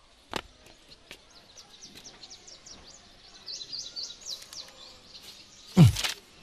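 Small birds chirping in quick, high, repeated notes, with a sharp click about a third of a second in. Just before the end comes a loud, quick sound that falls steeply in pitch.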